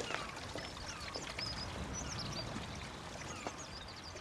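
Outdoor ambience of small birds chirping and twittering over a steady background hiss, with a few faint clicks.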